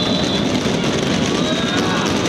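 Football crowd noise with shouting. A referee's whistle, blown for the penalty to be taken, cuts off about half a second in.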